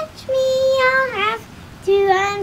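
A six-year-old girl singing alone: a long held note from about a third of a second in, then a short phrase that slides down in pitch.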